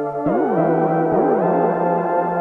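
Behringer PRO-800 analog polyphonic synthesizer playing a sustained pad chord, with a new chord starting about a quarter second in. Its partials sweep up and down across each other, so the tone keeps shifting.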